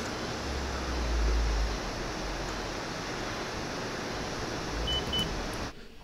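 Soundtrack of a TV medical drama's operating-room scene: a steady hiss with a low rumble that swells about half a second in and dies away before two seconds. Two short high beeps come close together about five seconds in.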